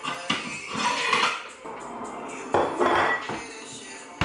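Ceramic plates clattering and clinking as one is lifted off a stack in a wooden wall cupboard. The clatter comes in two bouts, one just after the start and another about halfway through.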